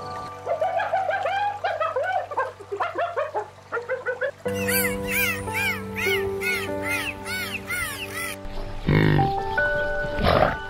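Background music with animal calls laid over it. The first half holds a run of short chattering bird-like calls, and then dolphins whistle in a regular series of rising-and-falling chirps, about three a second. A loud, deep animal call comes near the end.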